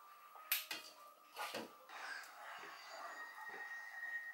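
Spoons clinking and scraping against a glass dessert bowl while soft ice cream is scooped in: a few sharp clicks in the first two seconds, then quieter taps.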